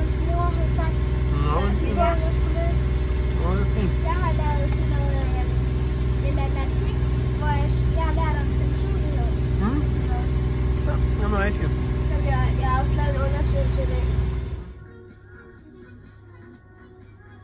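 A boat engine running at a steady, even drone while under way, with children's voices over it. Near the end it cuts off abruptly to a much quieter stretch with faint music.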